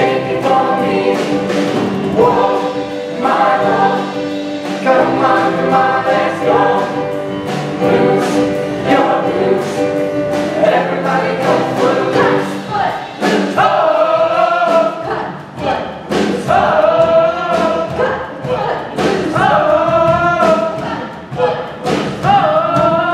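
Show choir singing an upbeat song together over an accompaniment with a steady beat. About 13 seconds in, the singing changes to short, repeated phrases about every second and a half.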